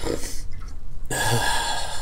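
A man's shaky breathing while crying: a short breath near the start, then from about a second in a louder, longer rushing exhale with a low choked catch in the voice, like a stifled sob.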